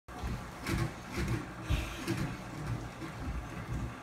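Bare feet thudding and slapping on a tile floor as children jump up and down, in a rhythm of about two landings a second.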